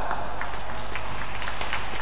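Sports-hall ambience: a steady wash of background noise with a few faint scattered clicks and knocks.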